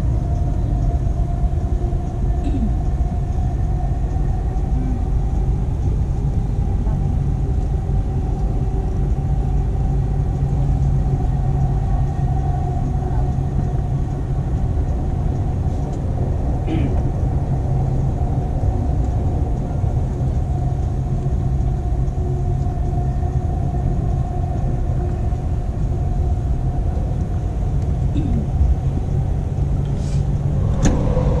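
Steady running noise inside a moving Dubai Metro train carriage: a low rumble with a steady humming tone over it and a few faint ticks.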